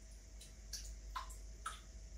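Milk pouring from a carton into a plastic measuring cup: a few faint glugs and ticks, about four in two seconds.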